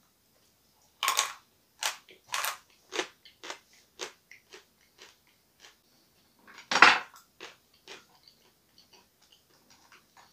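Dry chunks of chalk bitten and chewed: a sharp crunch about a second in, then a run of smaller crunches as the hard pieces break up. Another loud crunch comes about seven seconds in, and fainter crackles follow.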